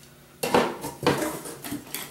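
Metal Ironlak spray paint cans clinking and knocking against one another as they are set down among other cans, a run of several knocks starting about half a second in.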